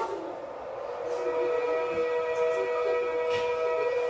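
A steady, held tone with several overtones, fading in over about the first second and then holding level, from a television drama's soundtrack.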